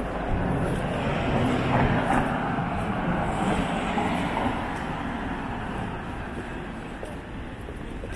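A car passing on the street, its engine and tyre noise swelling about a second in and fading as it drives away.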